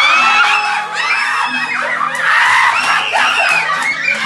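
Several men shouting and yelling loudly and excitedly, reacting as a birthday boy's face is shoved into his cake (the Mexican 'mordida' prank).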